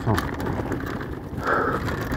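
Mountain bike rolling down a dirt singletrack: a steady rush of tyre noise with the bike rattling over the bumps.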